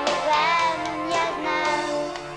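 A young girl singing a children's pop song into a microphone, her melody line over a band accompaniment.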